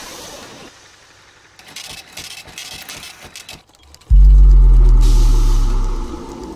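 Advertisement sound effect: a few seconds of faint scattered noise, then about four seconds in a sudden deep bass boom that holds and slowly fades under the brand logo.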